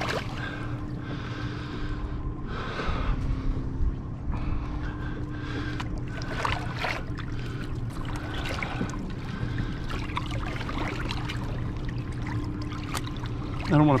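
Water sloshing and splashing against the side of a boat as a large Goliath grouper shifts in a landing net, in short bursts a few times. Under it runs a steady low motor hum.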